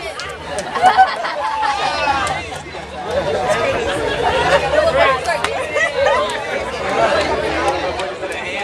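Several people talking at once: loud, overlapping crowd chatter with no clear words.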